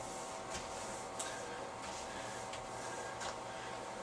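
Steady low hiss of a quiet room with a few faint, scattered ticks from a window-cleaning pole and squeegee being handled.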